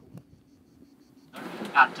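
Near silence for the first second or so, then the steady running noise of a minibus heard from inside the cabin, which starts abruptly with a cut.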